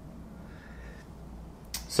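Faint, steady low rumble of outdoor motor traffic heard from indoors, with a short intake of breath near the end.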